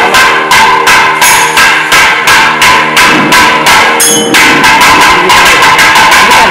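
Thavil barrel drum played in a steady, driving rhythm with small hand cymbals (talam) ringing on the beats; the drum strokes come faster from about four seconds in.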